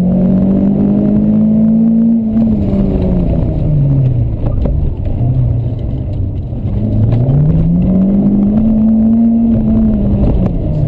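Renault Clio Sport rally car's engine heard from inside the cabin, pulling hard with its pitch climbing for the first two seconds. It then drops away as the driver lifts and slows for a tight left-hand 90-degree corner, runs low for several seconds, and climbs again on the exit to hold high near the end.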